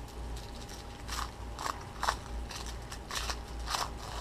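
Crinkling of thin white wrapping as a small wrapped item is unwrapped by hand, in about five short rustling bursts over a faint low hum.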